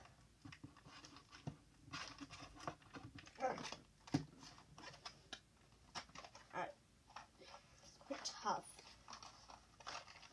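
Faint scratching, picking and clicking of fingers and fingernails working at a small cardboard box that is taped shut, with a few brief, scattered scrapes of the cardboard.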